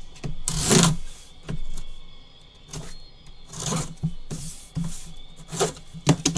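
Cardboard box being opened by gloved hands: several short rustling, scraping swishes of cardboard flaps, the loudest about a second in.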